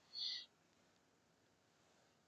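Near silence in a pause between speech, broken once just after the start by a brief, faint, high-pitched sound lasting about a third of a second.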